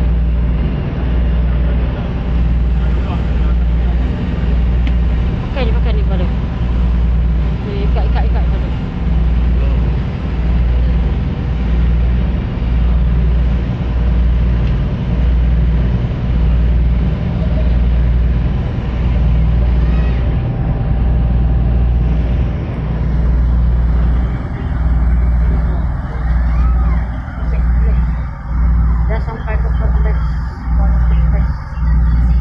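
Passenger ferry's engines running steadily inside the cabin: a loud, deep drone whose low rumble swells and dips about once a second.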